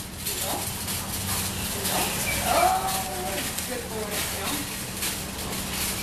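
Indistinct voices over a steady hum, with a short sliding whine about two and a half seconds in.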